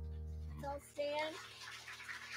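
A held electric keyboard chord at the end of a worship song, cut off just under a second in, followed by a faint voice.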